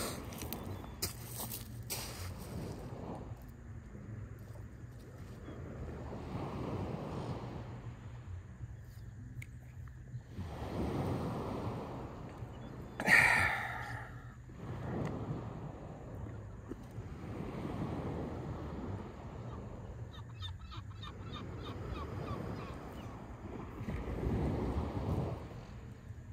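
Small waves washing onto a pebble beach, swelling and fading every few seconds, with one louder surge about halfway through.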